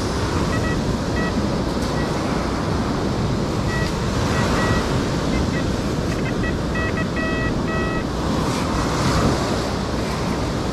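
Surf washing up the beach and wind buffeting the microphone, with short high-pitched beeps from an XP Deus 2 metal detector as its coil is swept over the dig hole, signalling a high-reading metal target; the beeps come mostly between about four and eight seconds in.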